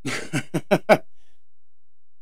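A man laughing: a short burst of laughter ending in four quick, rising laughs within the first second.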